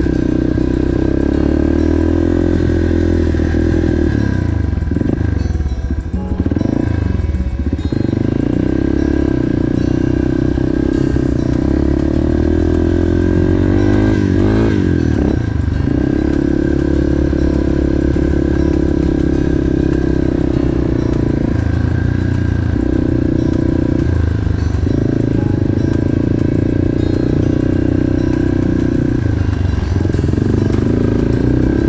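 Yamaha TT-R230 trail bike's single-cylinder four-stroke engine running at low speed, its revs dropping and rising a few times, most clearly around five and fifteen seconds in.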